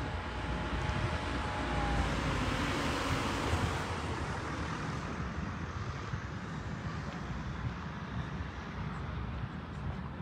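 A vehicle passing on the road: a steady rush of noise that swells a second or two in and then fades, with a faint tone falling in pitch as it goes by.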